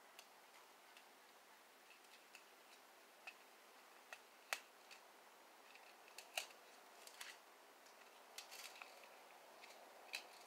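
Faint, irregular small clicks and snaps from hands handling a small plastic spool of thread and jewelry parts, about a dozen over the stretch, the sharpest one about four and a half seconds in.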